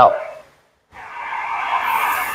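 A steady rushing hiss of car-wash noise comes in about a second in, after a moment's silence.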